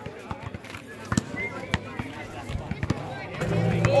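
Basketballs bouncing on an outdoor court: a string of short, sharp thuds at irregular intervals, with voices in the background.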